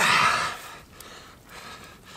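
A man's sharp, heavy exhale of effort, lasting about half a second, as he lifts a mirror carp of nearly 18 kg. A faint click follows about a second in.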